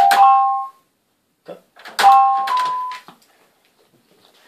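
Small toy electronic keyboard pressed by a dog's paw: a jumble of a few notes sounding together at the start, then another clump of notes about two seconds in, each dying away within a second.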